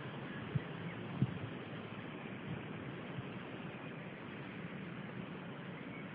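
Faint, steady outdoor background hiss with no distinct source, broken by two soft clicks about half a second and just over a second in.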